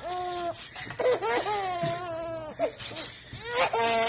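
A six-month-old baby laughing in high-pitched squeals, three of them, the middle one long and wavering.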